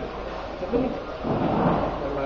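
Muffled rumbling noise on a handheld interview microphone, like handling or a breath on it, from about a second in, over faint low voices.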